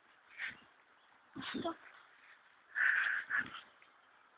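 Six-week-old Siberian husky puppy vocalising briefly: a short sound about half a second in, then a longer, louder one near three seconds.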